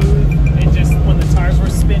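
1967 Camaro SS's 396 big-block V8 running at a steady speed under way, heard from inside the cabin, with brief voices over it.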